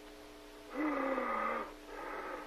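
A man's hoarse groan lasting about a second, sagging slightly in pitch, with a shorter second groan starting near the end, over a faint steady hum.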